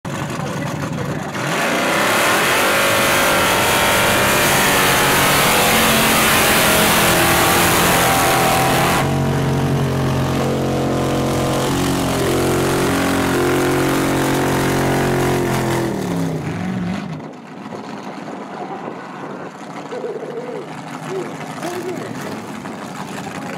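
Supercharged Holden drag car's engine at full throttle. A loud rushing roar comes in about a second and a half in and lasts until about nine seconds. The engine then runs on hard at a steadier pitch, and the pitch falls away as it lifts off, going much quieter about seventeen seconds in.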